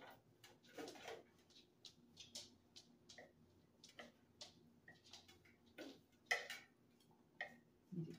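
Faint, irregular light clicks and taps of a cake knife and server against a glass cake plate and plastic plates as cake slices are cut and lifted, with a sharper tap about six seconds in.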